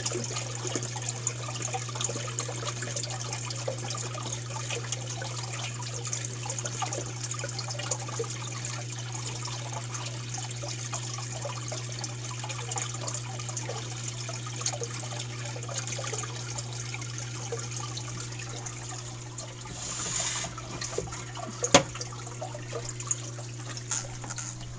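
Water running and trickling through an aquarium's hang-on-back overflow box as it refills and its U-tube siphons start again after the pump's power is restored, over a steady low hum. The overflow is still catching up but working after the power cut. A single sharp knock near the end.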